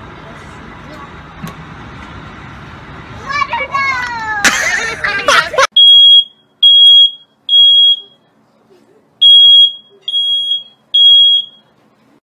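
A smoke alarm sounding: loud, steady, high-pitched beeps about half a second long, in two groups of three with a longer pause between, the three-beep fire-alarm pattern.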